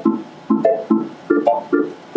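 Keyboard organ part of a reggae rhythm: short, choppy chords played on a Roland X6 keyboard, lower and higher chords alternating in a steady pattern of about two to three stabs a second.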